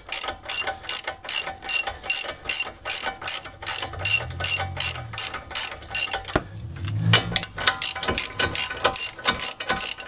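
Hand socket ratchet clicking in quick back-and-forth strokes, about five clicks a second with a short break about six seconds in, as a brake caliper mounting bolt is run down before torquing.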